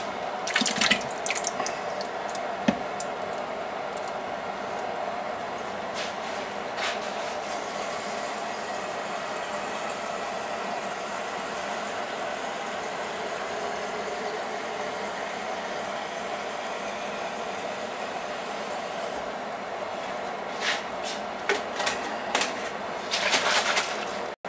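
Kitchen tap running steadily, filling the emptied Ragu sauce jar with water. It shuts off near the end, followed by a few light knocks and clinks.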